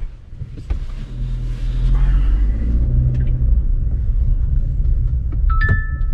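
Low engine and road rumble inside the cabin of a Chery Tiggo 7 Pro as it pulls away and gets under way, quieter for the first second and then steady and louder. A short electronic chime near the end.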